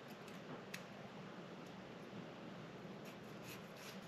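Faint scraping and a few light clicks of a large kitchen knife pushing pickled vegetables off its blade into a plastic container, with more scraping strokes near the end.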